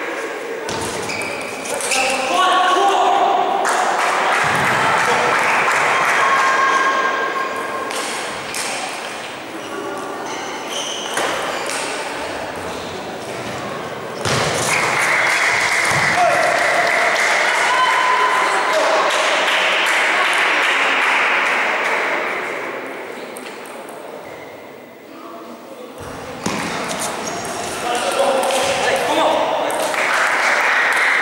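Table tennis rallies: a celluloid-type ball clicking off the bats and bouncing on the table in quick series of sharp taps, echoing in a large sports hall.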